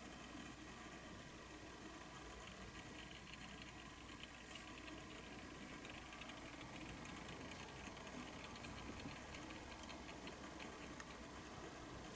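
Very faint, even hiss with light, irregular ticking from a small motorized display turntable turning slowly.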